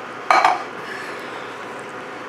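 A single short clink against an enamelled cast-iron Dutch oven about a third of a second in, followed by low, steady kitchen noise.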